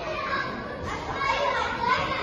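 Children's voices calling and chattering in a busy indoor play hall, several high-pitched voices overlapping.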